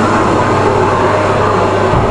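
A loud, steady low rumble with a constant low hum beneath it.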